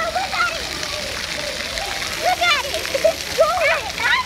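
Splash-pad ground jet spraying water steadily onto wet concrete. Children's high voices call out over it about two seconds in and again near the end.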